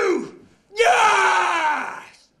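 A person's long scream, starting about three quarters of a second in, its pitch slowly falling as it fades, after the falling tail of an earlier cry.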